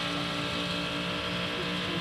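Onboard sound of the #31 Whelen Cadillac DPi-V.R prototype's V8 racing engine holding a steady note at speed, with wind and road noise over it.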